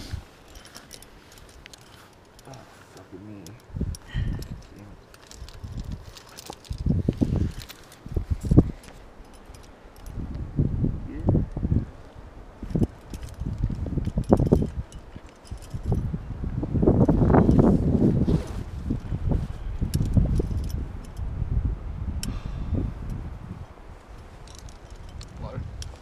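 Metal climbing hardware (carabiners and cams) clinking and jangling as gear is sorted on a belay ledge, over repeated heavy low rumbles of wind on the microphone, the strongest about two-thirds of the way through.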